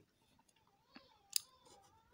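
Quiet pen-on-paper writing: two short, sharp clicks about a second in as the pen tip meets the paper to write a numeral.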